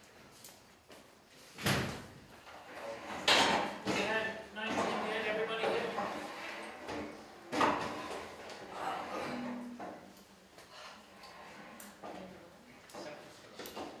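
A few sharp knocks or bangs, about two, three and a half and seven and a half seconds in, among indistinct voices in a room.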